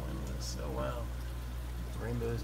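Aquarium sponge filter and air supply: a steady low hum under bubbling, trickling water, with a brief faint voice about half a second in.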